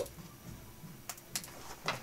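Quiet room tone in a small studio, with three faint clicks in the second half.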